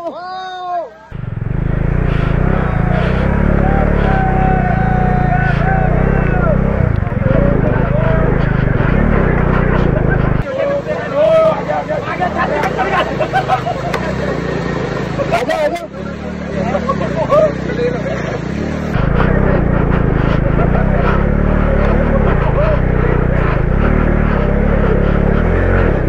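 Heavy low rumble of vehicle engines working through a rocky stream crossing, mixed with running water, with people calling and shouting over it. The sound changes abruptly several times.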